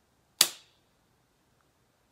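Needle-free 0.5 ml hyaluron pen firing once against the skin of the jaw: a single sharp snap about half a second in that dies away quickly.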